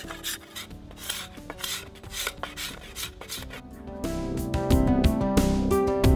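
Steel scraper drawn along the belly of a yew bow stave, taking wood off in quick rasping strokes about three times a second, over quiet background music. About four seconds in, acoustic guitar music swells up and becomes the loudest sound.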